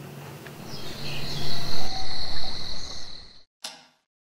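A steady high-pitched night insect chorus, like crickets, over a low hum. It cuts off suddenly about three and a half seconds in, and a single sharp tick of a wall clock follows near the end.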